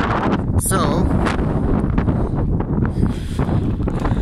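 Wind blowing across the microphone: a steady low rumble throughout.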